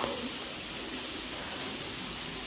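Steady hiss of running water trickling inside a rock chamber.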